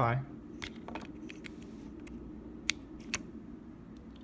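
A few small sharp clicks and light rattling as a micro-USB power cable is handled and plugged into a Raspberry Pi board; the sharpest click comes a little before three seconds in.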